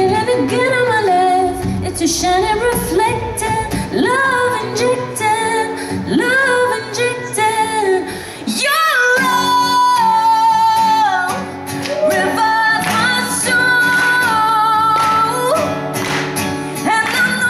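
A woman singing live into a microphone with acoustic guitar accompaniment. Her notes waver, and she holds one long note near the middle.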